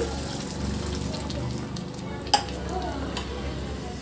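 Chicken curry sizzling in a pan as water is poured in and stirred with a spatula, with one sharp knock about two seconds in.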